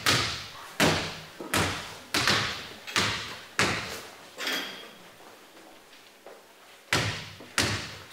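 Basketballs bounced on a stage floor, dribbled in a steady beat about every 0.7 s, each bounce ringing on in the hall. The beat stops for about two seconds, then two more bounces come near the end.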